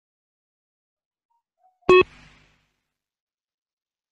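A single short electronic beep from a shuttle-run fitness-test audio track, about two seconds in. It is the pip that cues the runners to reach the line.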